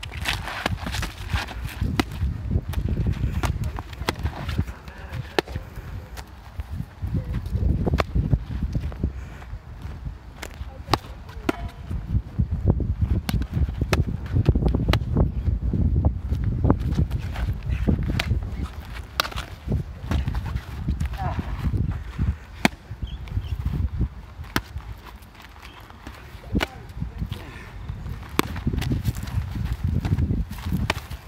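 Padded practice swords knocking against each other and a round shield in sparring: sharp, irregular knocks scattered throughout, with footsteps scuffing on dry ground over a constant low rumble.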